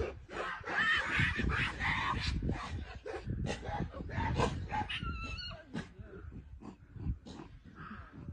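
Mountain gorillas screaming and barking in a fight between silverbacks: a run of short calls, loudest in the first half, with a pitched wavering cry about five seconds in.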